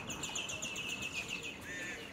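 A bird singing a fast run of repeated high chirps, about seven a second, that stops about a second and a half in, followed by a brief lower call.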